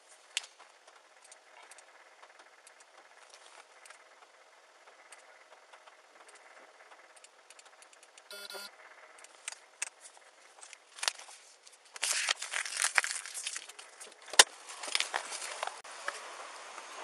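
Body-worn camera rubbing against clothing and the car seat as the wearer climbs out of a patrol car: dense rustling and clicking that gets loud in the last few seconds, with one sharp knock near the end. Before that there is a quiet steady hiss, broken about halfway by a short electronic beep.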